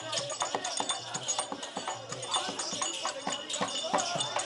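Street-theatre accompaniment: quick, irregular drum strokes and small hand cymbals, with a voice over them.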